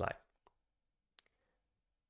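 Two short clicks from computer controls, a faint one about half a second in and a sharper one a little over a second in.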